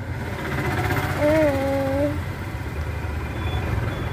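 Steady low rumble of a car running, heard inside the cabin. About a second in, a child's voice hums one short note for under a second.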